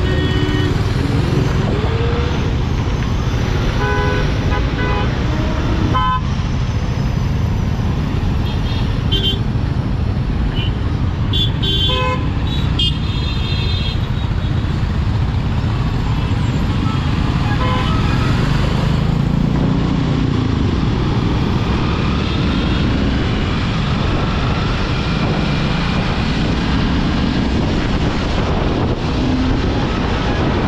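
Riding a Honda CBR250R single-cylinder motorcycle in slow, dense traffic: a steady rush of wind and engine rumble, with other vehicles' horns honking in short blasts several times in the first half, most thickly about 11 to 13 seconds in.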